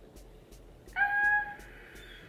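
A woman's short, high-pitched "ah" of delight, about a second in, held for about half a second.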